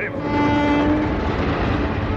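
Locomotive sound effect: a train running with its horn held in steady tones over the rumble of the train, the horn weakening toward the end.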